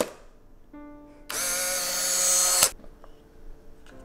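Folding instant film camera taking a picture: a sharp shutter click, then after about a second its motor whirs for about a second and a half as it ejects the print, stopping abruptly.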